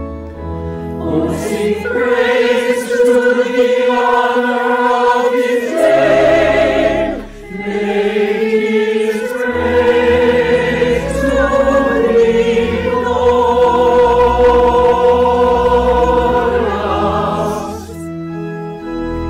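A mixed choir of many voices singing an anthem in long held chords, with organ accompaniment underneath; the singing breaks briefly between phrases about six and seven and a half seconds in.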